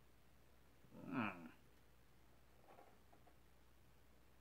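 A single short call from a domestic animal about a second in, the loudest sound, gliding in pitch for about half a second. A few faint taps follow near the end as a chef's knife slices through cucumber onto a bamboo cutting board.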